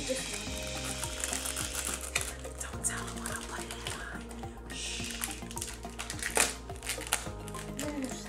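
Background music with a steady low beat, over scattered clicks and scrapes of a spoon stirring slime in a plastic bowl; one sharper click comes about six seconds in.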